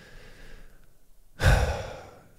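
A man breathing close to a microphone in a pause between sentences: a faint breath, then a louder, sigh-like breath about one and a half seconds in.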